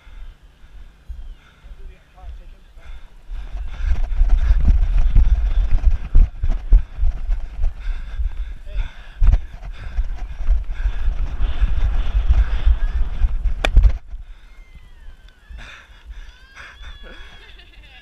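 Wind rumbling over a body-worn camera's microphone while the wearer sprints, with running footfalls thudding through it. It starts about three seconds in and cuts off suddenly near the end, leaving faint calls from other players.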